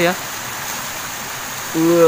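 Steady, even rush of a shallow river flowing over its bed, with a man's voice briefly at the start and again near the end.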